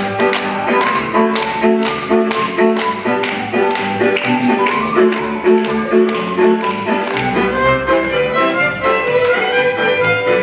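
Folk band music led by fiddles, with sharp hand claps on the beat about two and a half times a second that stop about seven seconds in.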